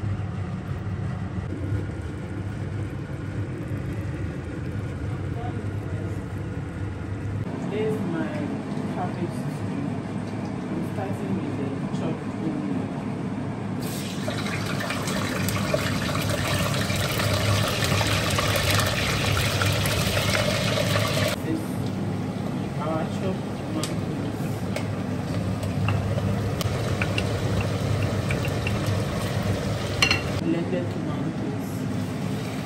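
Cooking in an enamel pot: a wooden spoon stirring thick stew, then chopped tomatoes sizzling in hot oil for several seconds in the middle, over a steady low hum.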